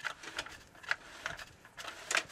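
Irregular light clicks and ticks, about two or three a second, as a sewer inspection camera's push cable is fed by hand into a drain line.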